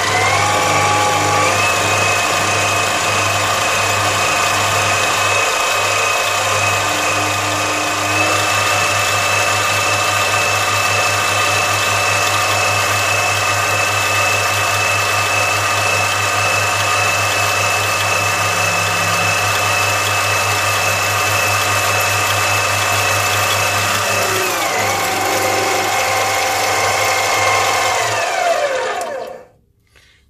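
7x14 mini lathe running while turning an aluminium bar with a carbide-insert tool: a steady motor whine over a low hum. The whine steps up in pitch about a second in and again around eight seconds, glides down twice near the end, and the lathe stops about a second before the end.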